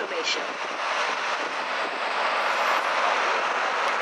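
Steady rushing noise of traffic and moving air heard from the open top deck of a moving tour bus.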